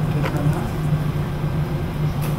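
Steady low hum with a low rumble beneath it.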